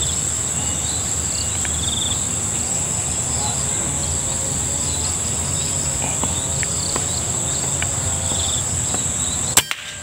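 Steady high-pitched chirring of crickets and other insects over a low background rumble. Near the end, a single sharp crack of a PCP air rifle shot.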